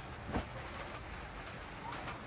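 A hand rubbing across a cloth garment, with one short brushing stroke about a third of a second in, over a steady low background.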